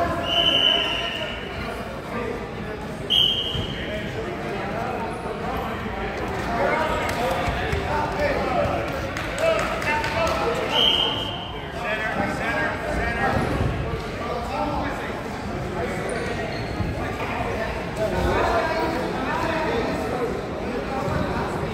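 Referee's whistle blown in short blasts: once just after the start, again about three seconds in, and once more about eleven seconds in, over steady voices and chatter echoing in a gym.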